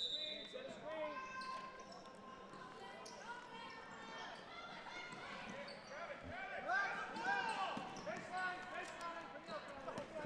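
Basketball being dribbled on a gym's hardwood floor during live play, with scattered shouts from players and spectators echoing in the gym.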